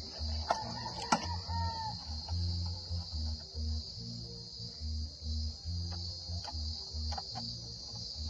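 Steady high-pitched chorus of insects, with the low pulsing bassline of background music beneath it. Two sharp clicks come about half a second and a second in.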